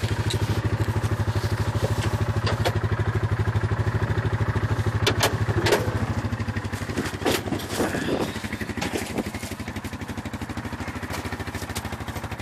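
Yamaha Rhino 450 UTV's single-cylinder engine running at low speed with an even pulsing beat, dropping to a quieter idle about eight seconds in. A few sharp clatters and knocks come around the middle.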